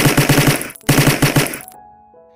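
Automatic gunfire sound effect: two rapid bursts of shots, about ten a second, the second burst starting just under a second in.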